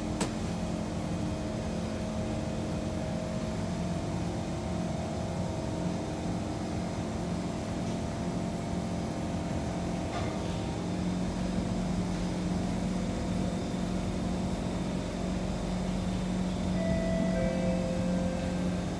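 A Kawasaki C151 train standing at a platform with its doors open, its onboard equipment and air conditioning giving a steady hum with constant low tones. There is a sharp click just after the start, and higher steady tones set in near the end.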